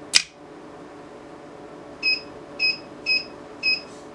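A solenoid door lock clicks sharply once near the start. About two seconds in, a 5 V active electromagnetic buzzer gives four short, high beeps, about two a second.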